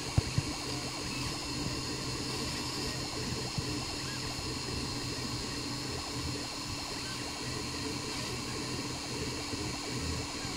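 Home-built 3D printer running mid-print: a steady whir with faint constant hum tones, from its cooling fans and stepper motors.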